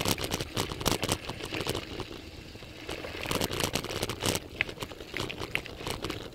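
Riding noise from a road bike: wind on the microphone with irregular rattles and knocks, easing off a little about two seconds in.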